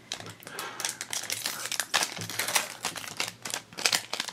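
Metallic foil blind-bag wrapper crinkling as it is handled and opened: a quick, irregular run of sharp crackles.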